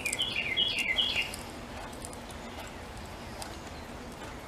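A bird calling outside: a quick run of about four short, falling chirps in the first second or so, then it stops.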